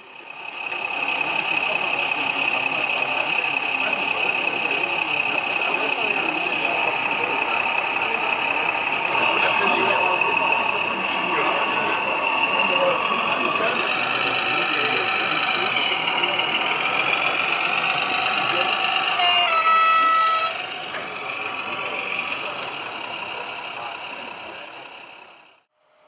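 Small narrow-gauge model trains running on an exhibition layout: a steady high whine with running noise and indistinct voices behind it. Nearly twenty seconds in there is one short horn toot, and then the sound fades out.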